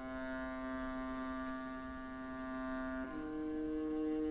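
Orchestra holding a long, steady sustained note, which steps up to a higher held note about three seconds in.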